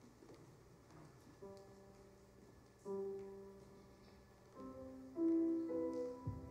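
Piano sounding single notes one after another, about five in all, each struck and left ringing so that they stack up into a held chord. The first comes softly about one and a half seconds in, and the loudest near the end.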